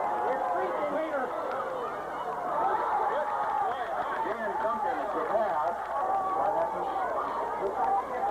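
Crowd of spectators chattering and calling out, many voices overlapping into a steady babble with no single clear speaker.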